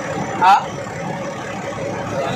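Steady running noise of a truck's engine heard inside the cab, with a man's short questioning "Ha?" about half a second in.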